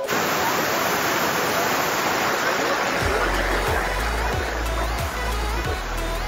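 A waterfall and its stream rushing loudly and steadily over rocks. About halfway through, background music with a steady bass beat comes in underneath.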